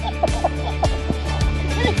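Background music with a steady bass and beat, and a quick run of short, repeated high notes over it.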